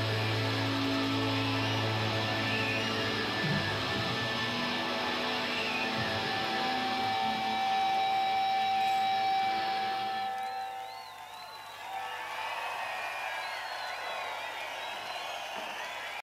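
A live rock band's closing sustained electric guitar and bass notes, droning and ringing out as the last song ends. They die away about ten seconds in. Then the crowd cheers and whistles.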